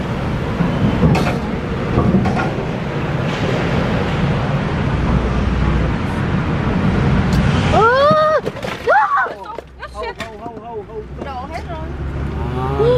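Inside a moving minivan driving onto a ferry's car deck: steady road and engine rumble with a few short knocks. About two-thirds in, a voice calls out with a rising-then-falling pitch, followed by quieter chatter.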